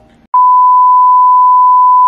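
A loud, steady single-pitch test tone, the reference tone that goes with television colour bars, starting suddenly about a third of a second in.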